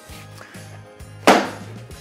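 An upturned loaf tin holding a frozen parfait set down on a wooden worktop: one knock about a second in, dying away quickly.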